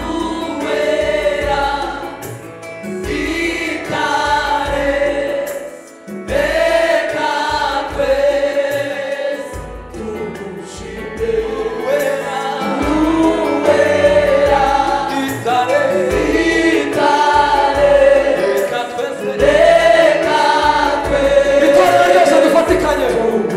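A choir of women's and men's voices singing a Rwandan gospel song, a male lead among them, with a low beat underneath.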